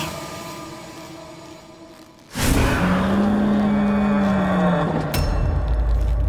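Dramatic horror-serial soundtrack: background music fades away, then a sudden loud hit brings in a low held tone that dips at its end. Near the end a second sharp hit sets off a deep rumble.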